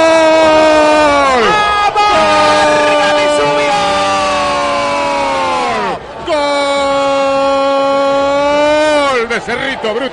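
Radio football commentator's long drawn-out goal cry, 'gooool', held on one pitch in three long breaths with short breaks near 2 s and 6 s, each breath sliding down in pitch as it runs out, announcing that a goal has been scored. Quick excited speech follows near the end.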